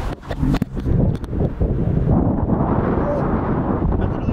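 Road and wind noise inside a moving car, a steady low rumble, with a few knocks from the camera being handled in the first second.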